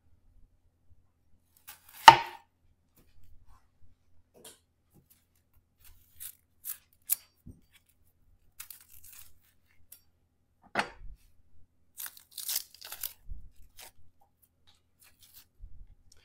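A knife trimming and peeling an onion. One sharp crunch of the knife cutting through the onion onto the cutting board comes about two seconds in. After it come light clicks and dry, papery crackles and tearing of onion skin being pulled off.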